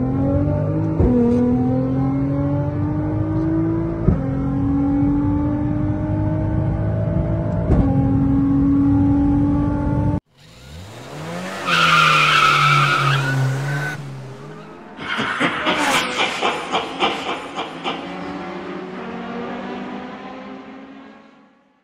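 Sports car engine at full throttle in a roll race, its note climbing and dropping back with quick upshifts about a second in, around four seconds and near eight seconds. After a sudden cut there is a high squeal lasting about two seconds, then a fast run of crackles that fades away.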